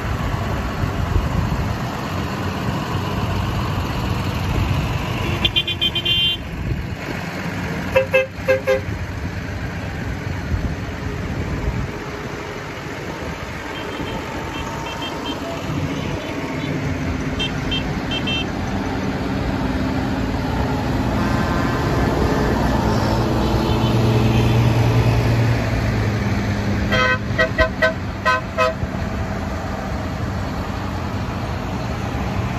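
Decorated farm tractors driving past one after another, their diesel engines running, the engine drone swelling loudest a little after twenty seconds as one passes close. Vehicle horns give short toots about six and eight seconds in, fainter ones in the middle, and a quick series of toots near the end.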